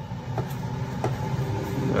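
Midea dual-basket air fryer's fan running with a steady low hum, with two light clicks as its lower door is opened.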